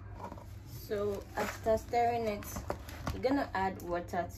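A person talking quietly in a small room, with short phrases and pauses.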